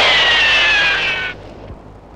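Loud rushing noise with two whistling tones that fall slowly in pitch, cutting off abruptly about a second and a third in.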